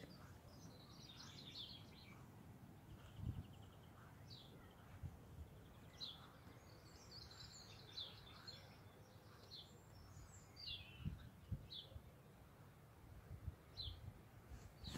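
Near silence with faint bird chirps: scattered short high calls and a brief buzzy trill about three seconds in. A few soft low knocks are heard.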